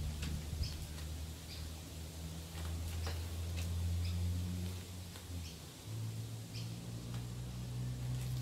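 Short, high bird chirps at irregular intervals over a low steady hum, with a few faint clicks as dog treats are broken up by hand.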